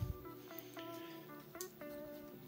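Faint background music with short plucked guitar notes.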